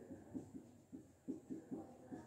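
Marker pen writing on a whiteboard: a run of faint, short squeaks and scrapes, about three or four a second.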